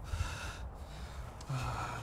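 A wounded man gasping in pain: a sharp breathy gasp, then quieter breathing, and a short low vocal sound near the end.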